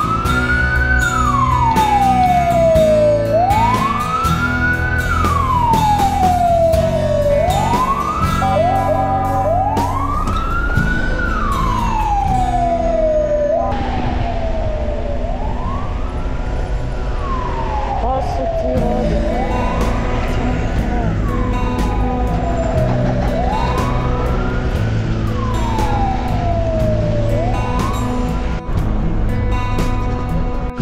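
An emergency vehicle's wailing siren, each cycle rising quickly and falling slowly, repeating about every four seconds, over background music.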